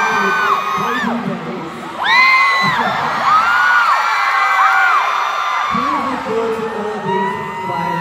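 Arena crowd screaming and cheering, many high-pitched shrieks overlapping, swelling about two seconds in.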